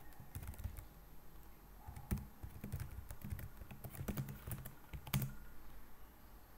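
Typing on a computer keyboard: irregular keystrokes, with sharper key presses about two seconds in and again near the end.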